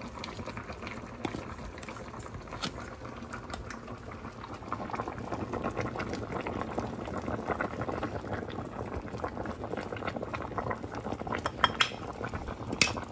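Pot of soup boiling, a steady bubbling crackle that grows a little louder about halfway through, with a few faint clicks.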